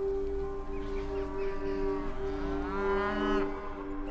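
A cow mooing: one long moo starting about two seconds in.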